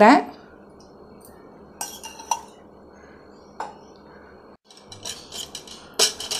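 A few light clinks and taps of a metal spoon against a pan and containers, separated by a quiet background hiss, with a short run of small clatters near the end.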